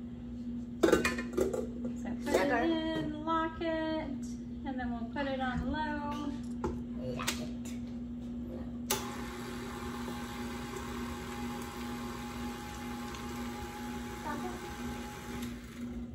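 A clunk as the steel bowl is set onto a tilt-head stand mixer. About halfway through, the mixer is switched on suddenly and its motor runs steadily, with a whine, as the beater creams softened butter.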